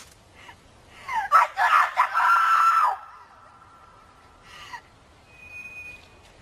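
A loud, high-pitched scream starting about a second in, wavering and then held for about two seconds before it breaks off, leaving a faint lingering tone.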